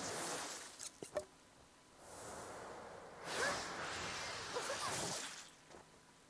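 Faint soundtrack of an anime episode playing: soft swells of rushing noise with a short click about a second in.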